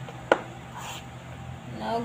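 A metal spoon stirring thick cookie batter in a bowl, with one sharp clink of spoon against bowl about a third of a second in.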